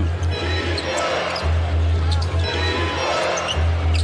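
Live basketball game in an arena: a ball being dribbled on the hardwood over steady crowd noise, with arena music carrying a heavy, pulsing bass underneath.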